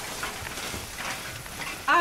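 Horse-drawn hay rake moving through tall grass: a soft, even crackling rustle with a few faint clicks.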